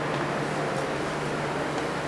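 Steady hum and hiss of the air-conditioning that keeps a wine cellar cold: one low, even tone under a constant rush of air.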